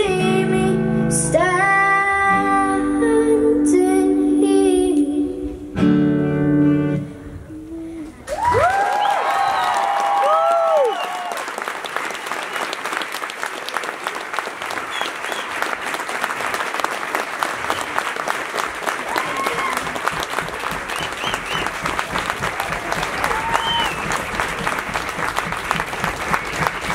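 A child singing with a strummed acoustic guitar, the song ending about eight seconds in. Audience applause follows for the rest of the time, with a few whoops and cheers soon after it begins and again later.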